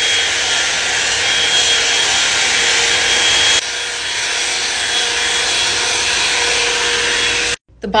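Hot-air brush running steadily: a loud hiss of blown air with a faint high whine from its motor. It drops slightly in level about three and a half seconds in and cuts off abruptly shortly before the end.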